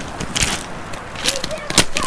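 Footsteps on a pebble beach strewn with seaweed: a few separate steps on the stones.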